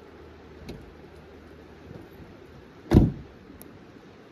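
A car door shut once, a single heavy thump about three seconds in, with a few faint clicks before it.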